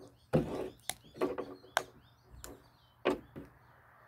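Irregular sharp knocks and cracks, about six over three seconds, as a hand tool works at a frog's leg bone trying to break it.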